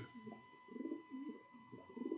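Recording of a male pigeon's soft courtship cooing, a string of low repeated coos, played back faintly through computer speakers.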